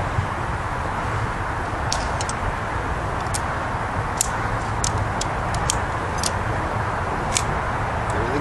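Aluminum tent pole sections clicking and tapping against each other as they are handled and fitted together. There are about a dozen light, sharp clicks, scattered from about two seconds in to near the end, over a steady background rumble.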